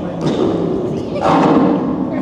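Close microphone handling noise: rubbing, crackling and bumping as the microphone is held and moved about, loudest a little past the middle, mixed with men's laughter.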